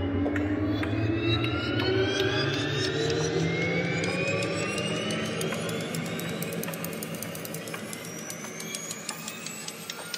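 Synthesised drone from a processed Nepalese bell sample, its ringing partials gliding slowly and steadily upward in pitch under a pitch envelope. A scatter of fine clicks and crackles runs through it.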